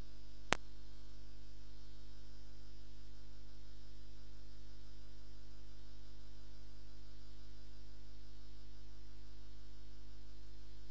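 Steady electrical mains hum with a stack of even overtones, unchanging throughout. One sharp click about half a second in.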